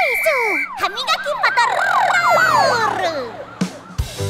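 Cartoon police-siren sound effect: a steady high whistle-like tone for under a second, then wailing pitches sweeping rapidly up and down, overlapping, fading out just before the song's music starts.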